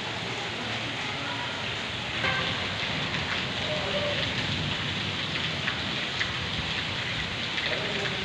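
Steady rain falling and splashing on surfaces, an even hiss with a few sharper drips standing out.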